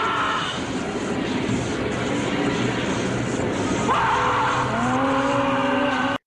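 Horror TV soundtrack music: a dense, rushing wash of noise under held tones, with a new sustained chord swelling in about four seconds in.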